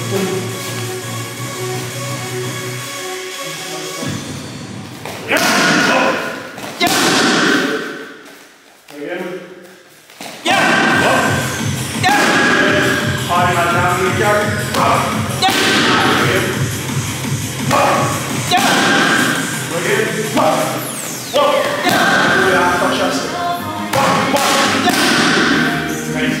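Punches and kicks landing on Muay Thai pads, a run of sharp thuds, over loud background music.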